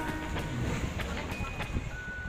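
The last faint notes of the background music, then a low rumbling room noise with a few faint clicks and a brief thin high tone.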